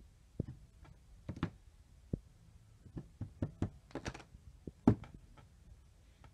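Clear acrylic stamp block knocking and tapping against an ink pad and the craft mat as a stamp is inked and pressed onto tissue paper: a scattered series of light clicks and knocks, with one sharper knock about five seconds in.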